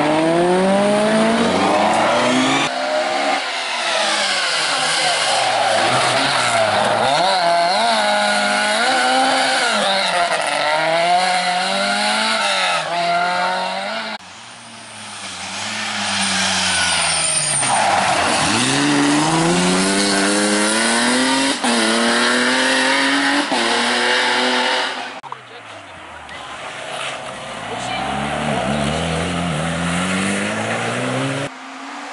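Rally car engines revving hard as several cars in turn accelerate through a tight corner. Each engine's pitch climbs and drops again and again with the gear changes, and sharp cuts join one car to the next.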